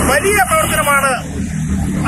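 A steady low rumble of road traffic under a man's voice, which speaks for about the first second and then drops away, leaving the traffic.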